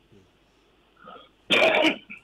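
A single short cough or throat clearing by a person, about one and a half seconds in.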